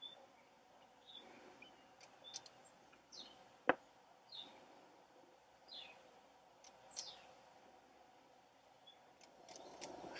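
Faint, short bird chirps, each falling in pitch, a second or so apart, with a few sharp clicks; one click, about four seconds in, is the loudest sound.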